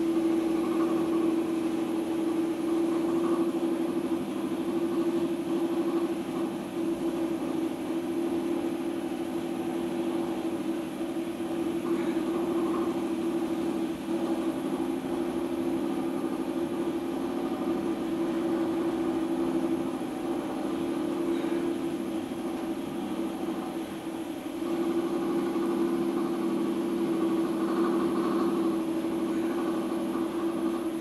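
Electric potter's wheel motor running with a steady hum while a tall clay form is worked on the spinning wheel head.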